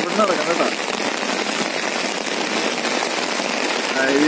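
Steady rain falling on an umbrella held overhead, an even hiss of drops on the canopy.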